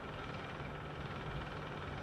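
A steady mechanical hum, like an engine running, over a constant background of outdoor noise.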